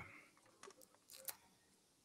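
Near silence, with a couple of faint clicks about half a second and a second and a quarter in.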